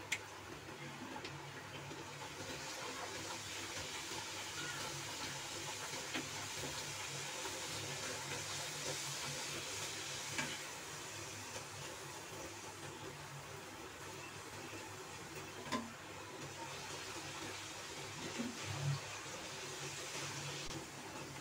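Puris deep-frying in hot oil: a steady sizzle of the oil, with a few light clicks of the wire frying spoon against the pan as they are pressed and turned.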